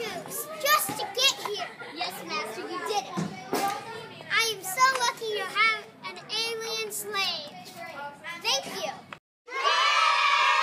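Children's voices talking and calling out quickly and high-pitched, cut off abruptly a little after nine seconds. After a short silence, a steady, louder sound starts near the end.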